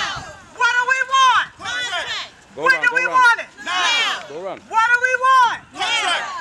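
A loud, high-pitched voice chanting in short, sustained phrases, about one a second.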